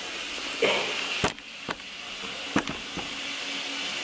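Steady background hiss with three sharp clicks between about one and three seconds in, the first the loudest: the handling knocks of a camera being picked up and moved.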